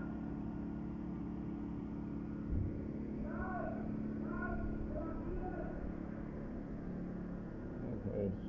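Street ambience: a steady low hum runs throughout, with scattered distant voices of people in the square and a single soft low thump a little after two seconds in.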